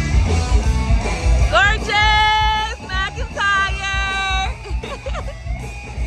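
Loud rock music with a heavy low beat and guitar, where a voice holds two long sung notes, each sliding up into pitch, the first about two seconds in and the second shortly after.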